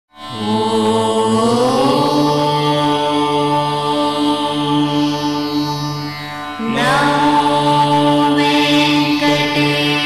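Indian devotional intro music: a long held chanted note over a steady drone, sliding up in pitch at its start. The note fades slightly, and a second held note swells in, sliding up, about seven seconds in.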